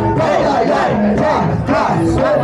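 Men shouting and rapping into handheld microphones over a lively crowd, with music underneath.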